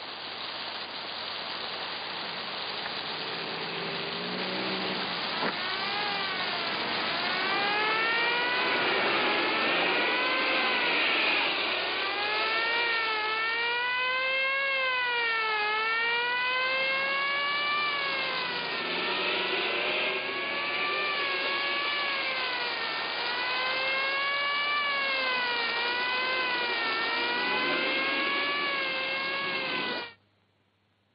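A wailing siren, its pitch sweeping up and down every second or two, over a steady rushing noise; the siren comes in about five seconds in and the whole sound cuts off abruptly at the end.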